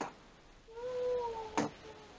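A single drawn-out, voice-like tone about a second long, holding steady and falling slightly in pitch, followed by a short click.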